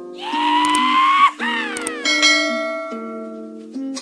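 Light plucked background music under a subscribe-button sound effect: a tone that rises slowly, then glides sharply down, followed about two seconds in by a bell ding that rings on.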